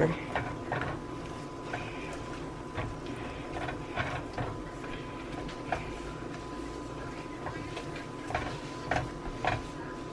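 Sliced onions and hot pepper frying in a nonstick pan, a steady sizzle under irregular soft scrapes and taps of a silicone spatula stirring them across the pan bottom.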